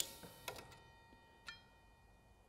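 Quiet room tone with two faint ticks, about a second apart.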